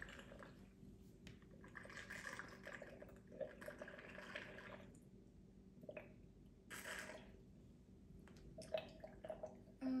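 Sugar water trickling faintly as it is poured slowly down a straw into a glass vase, coming and going in a few soft spells.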